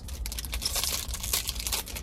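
Trading-card pack wrapper crinkling and rustling in the hands, a steady crackle.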